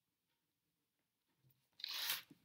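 Near silence (room tone), then near the end a sudden short burst of rustling noise close to the microphone.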